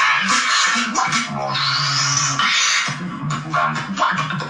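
Beatboxer performing vocal bass: held low bass notes under hissing hi-hat-like noise, with a rising whistle-like tone near the middle.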